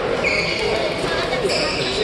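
Badminton being played in a large sports hall: short, high shoe squeaks on the court floor, with people talking nearby.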